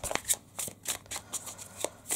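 A tarot deck being overhand-shuffled by hand, packets of cards slapping and riffling against each other in an irregular run of quick soft clicks.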